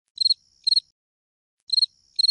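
Cricket chirps in pairs, a pair about every second and a half, over otherwise dead silence: a 'crickets' sound effect standing for the piano being inaudible in silent mode.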